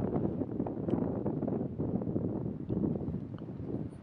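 Wind buffeting the microphone: an uneven low rush with no clear tone.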